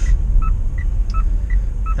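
Car turn-signal indicator ticking, short electronic ticks alternating between a lower and a higher pitch, about three a second, over a low cabin rumble.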